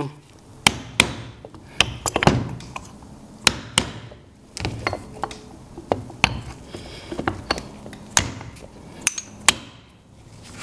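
A hammer tapping a steel plunger punch, about fourteen sharp strikes at an uneven pace, driving the old ceramic plunger out of a pump piston cap. Because the plunger is whole and bottoms out, it takes extra blows.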